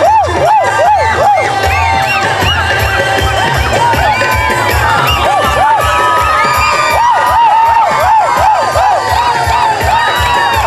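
A crowd of young people cheering and whooping with many overlapping shouts, over music with a steady low beat.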